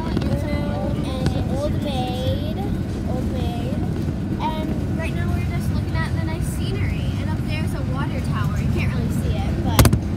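Steady road and engine rumble inside a moving motorhome, with indistinct voices over it and a sharp knock near the end.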